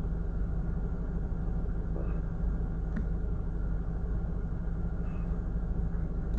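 Steady low rumble of a car's cabin, with a faint tick about three seconds in.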